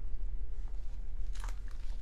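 A person drinking from a plastic cup, with a short sip or swallow about one and a half seconds in, over a low steady hum.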